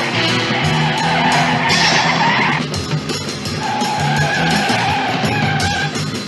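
Car tyres squealing in two long squeals. The first cuts off suddenly a little over two and a half seconds in, and the second starts about a second later and runs until near the end. Chase music with a steady beat plays under them.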